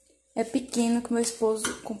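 A woman speaking, after a brief click at the very start.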